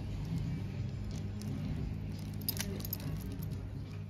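Glass-bead and chain necklaces jangling and clinking as they are handled, with a sharper cluster of clinks about two and a half seconds in, over a steady low hum.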